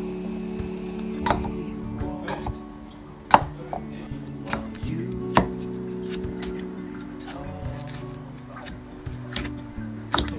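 A chef's knife cutting cucumber on a wooden chopping block: irregular sharp knocks of the blade striking the board, the loudest about three and a half seconds in and many lighter ones in the second half. Background music with sustained tones runs underneath.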